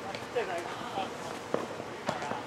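Futsal ball kicked on an artificial-turf court: a sharp thud about one and a half seconds in, with a fainter kick near the start. Players' short shouts come in between.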